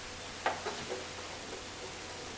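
Faint handling noise of rubber-jacketed ignition wires being slid back and tucked along the engine's fan shroud, with a small click about half a second in and a few softer ticks, over steady room hiss.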